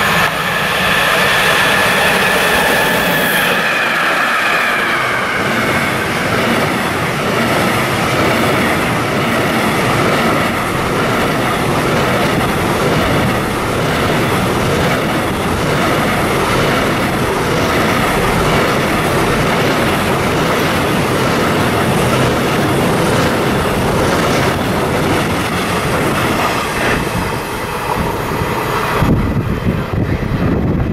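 Electric-hauled container freight train passing at speed. In the first few seconds several high tones fall in pitch as the locomotive goes by. Then comes a long, steady rumble and rush of the container wagons' wheels on the rails.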